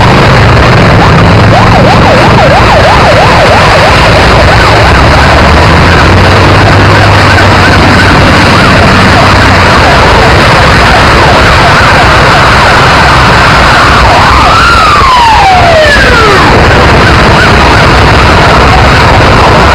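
Emergency vehicle sirens over a loud, steady rushing noise: a fast yelping siren a couple of seconds in, and near the end a siren that rises and then slides down in pitch.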